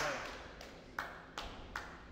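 Squash ball knocks against racket strings, the walls and the floor of a squash court: a sharp knock at the start, then three more about a second in, close together. Each rings briefly in the hard, echoing court.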